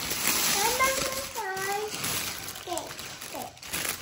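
Shiny metallic cellophane gift wrap crinkling and rustling as hands pull it open. A small child's voice calls out a few short wordless sounds over it.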